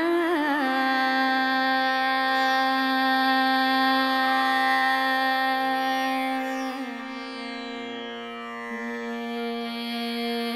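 Hindustani classical vocal music: a woman singing a slow vilambit khayal in raga Bhoopali, with tanpura and harmonium accompaniment. She opens with a wavering ornament, then holds one long note, which slides down to a lower note about seven seconds in.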